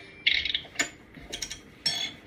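Clock-like tick-tock, about two beats a second, alternating a short hissing tick with a sharper click, standing for the ticking of the alarm clock Tickety Tock.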